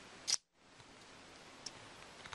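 A short, sharp scraping click about a third of a second in, as the plastic honey gate on the bottling bucket is shut after filling a tub. The sound drops out completely just after, and a faint click follows later.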